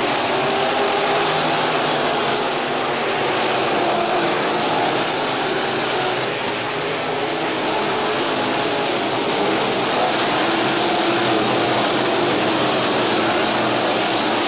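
IMCA Sport Modified dirt-track race cars running at racing speed, their V8 engines making a steady, continuous drone with engine notes rising and falling as the cars pass.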